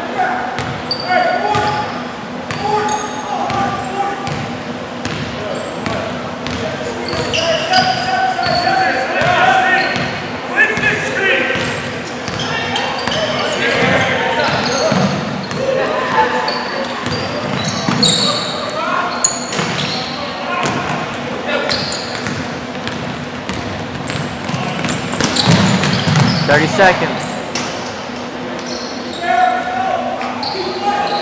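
A basketball game on a hardwood gym floor: a ball bouncing and dribbling, short high squeaks of sneakers, and players' shouts and voices echoing in the large hall. The activity gets louder about 25 seconds in.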